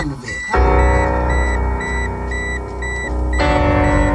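Music playing through a car stereo with a Bazooka 6.5-inch subwoofer. The heavy bass comes in about half a second in, after a brief break as a track starts. A short high beep repeats about three times a second throughout.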